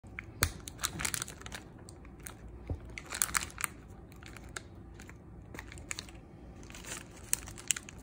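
Aluminium foil crinkling and crackling as a knife slices a block of cheddar cheese on it, with irregular sharp clicks from the blade.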